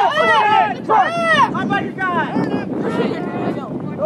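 Sideline spectators and coaches shouting, several voices overlapping and too blurred to make out, with some wind on the microphone.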